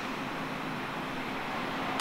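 Steady ambient hum of traffic and vehicles around a parking lot, an even noise with a faint low steady tone and no distinct events.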